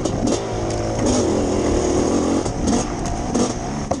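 Two-stroke dirt bike engine running on the trail, revving up and easing off as the rider works the throttle, with wind noise over it.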